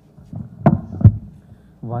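Two thumps from a gooseneck microphone being handled on a lectern, a little under half a second apart.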